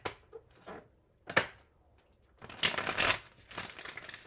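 A tarot deck being shuffled by hand: a few soft card flicks, a single sharp snap about a second and a half in, then a dense burst of cards shuffling for under a second a little after halfway.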